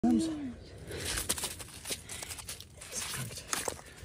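A trout being hauled out of an ice-fishing hole and flopping on snow and slushy ice: a run of irregular crunches and sharp knocks. A brief vocal exclamation comes right at the start.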